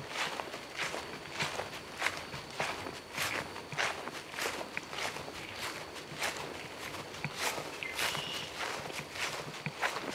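Footsteps of people walking at a steady pace, about two steps a second.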